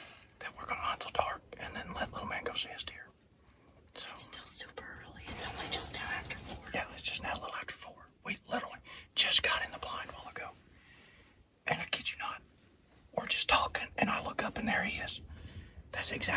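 People whispering to one another in short phrases with brief pauses.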